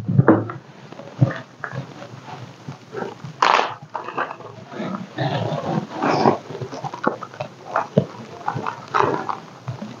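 Handling noise from a bundle of wooden arrows: shafts knocking and rubbing together, with rustling of the wrapping as the bundle is unwrapped. Irregular clicks and scrapes, the loudest a scrape about three and a half seconds in.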